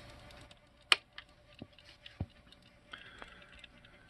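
Mechanical clicks of a boombox's piano-key cassette deck buttons being pressed: one sharp click about a second in, then a few softer clicks, over a faint steady hum.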